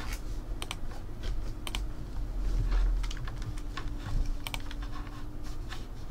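Typing on a computer keyboard: irregular keystrokes, several a second, with a steady low hum beneath.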